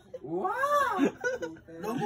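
A person's high-pitched, drawn-out cry, rising and then falling in pitch, lasting under a second, amid laughter and chatter.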